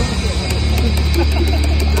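Stadium public-address music holding a long, steady low note, with scattered voices from the crowd in the stands.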